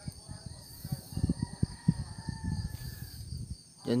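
Crickets chirping steadily, over many irregular low thumps and knocks.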